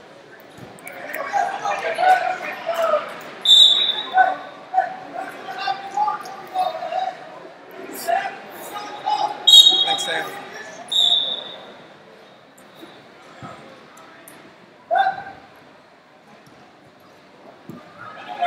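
Voices shouting and calling out across a large, echoing hall, with short shrill blasts of a referee's whistle: once about three and a half seconds in, then twice around ten to eleven seconds in. The shouting dies down over the last several seconds.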